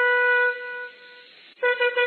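Shofar (ram's horn) blasts: a long held note that ends about half a second in, then, after a short pause, a new blast starting near the end in quick, rapid pulses.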